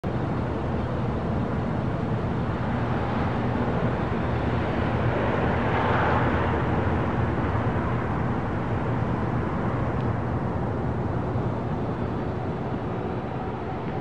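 City traffic noise: a steady, low rumbling wash of road noise that swells to a peak about six seconds in and then eases off.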